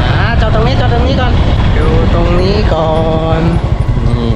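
Loud wind buffeting and rumble on the microphone from riding on a moving motorcycle, with a man's voice talking over it for most of the time.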